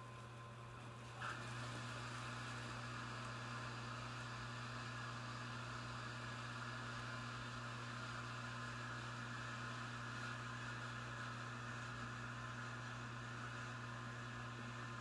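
Wood stove fan running steadily with a low hum. About a second in there is a brief bump, and the sound then grows a little louder, with an added higher hiss.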